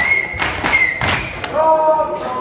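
A few sharp thuds in quick succession from the MMA cage fight, over crowd voices that rise into shouts near the end.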